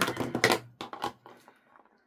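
Sharp clicks and taps of a plastic ink pad case being picked up and handled over a craft cutting mat. The loudest tap comes about half a second in, a couple more follow near one second, and the sound then dies away.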